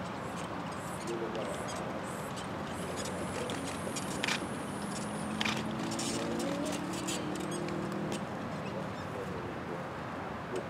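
Faint distant voices over steady outdoor background noise, with a few light clicks.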